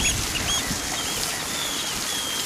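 A garden hose spraying a steady jet of water onto wet sand, under a run of short, high chirping bird calls repeated several times a second.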